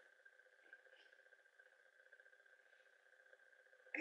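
Near silence: faint room tone with a steady high hum.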